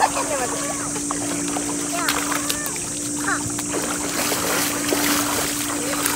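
Children wading and splashing through shallow water running over stone paving, against a steady wash of moving water, with children's voices calling in the background.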